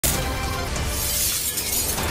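Breaking-news intro sting: dramatic music with a glass-shattering sound effect, starting abruptly over a steady bass.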